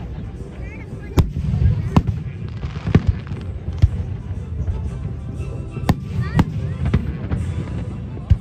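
Aerial fireworks bursting overhead: about seven sharp bangs at uneven intervals, roughly a second apart, over a steady low rumble.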